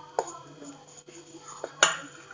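A utensil clinking and scraping against a stainless steel bowl while thick cake batter is stirred, with a few sharp clinks, the loudest near the end.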